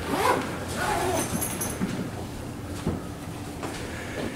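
Indistinct background voices in a small room, strongest in the first second or so, over a low steady hum, with a few light knocks.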